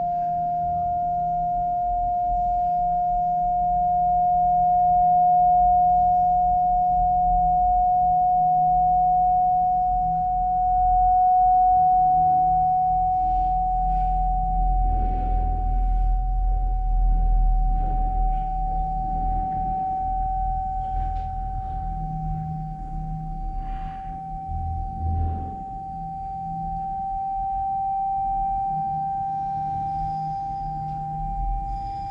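A single sustained pure tone that rises slowly and evenly in pitch without a break, over a low rumble.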